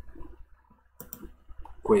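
Computer mouse clicking, two quick clicks close together about a second in, as a menu option is picked.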